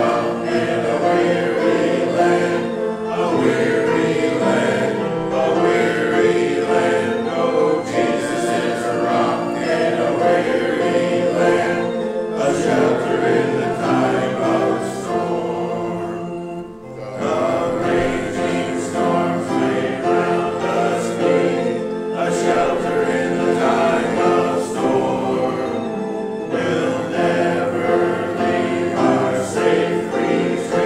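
A group of voices singing a hymn together, with a short break about halfway through.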